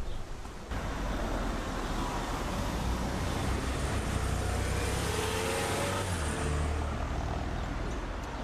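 A car driving past. Its sound builds from about a second in, peaks around five to six seconds, then eases off.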